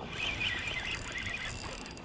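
Shimano Nasci 4000 spinning reel being worked while fighting a hooked striped bass on light tackle: a high, wavering, squeaky mechanical whine from the reel.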